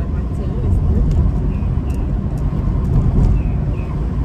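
Steady low rumble of road and engine noise inside the cabin of a moving car.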